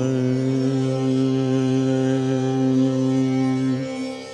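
Male Carnatic vocalist holding one long, steady note at the close of a phrase of raga alapana in Purvi Kalyani. The note stops shortly before the end.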